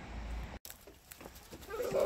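Low outdoor rumble that cuts off abruptly about half a second in, then near the end a child's voice starting up with a high, wavering pitch.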